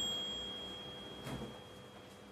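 A high, pure bell-like ding, struck just before, rings on as one steady tone and slowly fades away. A soft low knock sounds about a second and a quarter in.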